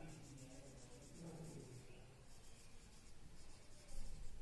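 Whiteboard marker writing on a whiteboard: faint, repeated strokes of the felt tip across the board's surface.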